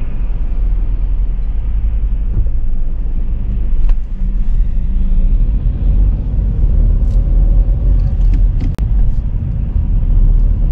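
Car cabin noise: a steady low rumble of engine and road, growing somewhat louder about halfway through as the car pulls away from the lights.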